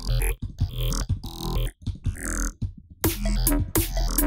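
Glitchy freeform-dubstep bass patch from the Vital synth: a 'clicky robot' wavetable through phasers whose settings jump under sample-and-hold random modulation, finished with a multiband compressor. It plays choppy, stuttering bursts over a steady deep sub, breaking off briefly twice before thickening near the end.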